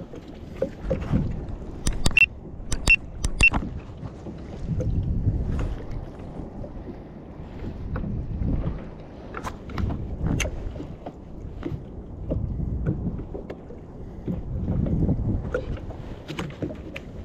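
Sea chop slapping and washing against the hull of a pedal-drive fishing kayak under way, coming in surges every two to four seconds. A few sharp clicks and knocks sound about two to three and a half seconds in.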